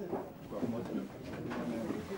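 Indistinct low voices of people talking, with no clear words.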